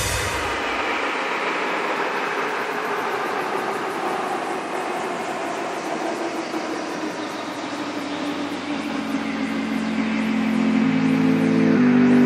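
Beatless breakdown in an electronic dance track: a sustained, noisy synth wash with no drums. Stepping low bass notes come in about nine seconds in, and the sound swells toward the end.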